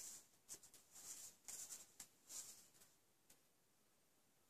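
Faint soft pats and rustles: a small clear acrylic stamp block dabbed on a foam ink pad and the cardstock slid on the mat, about half a dozen light touches in the first two and a half seconds, then near silence.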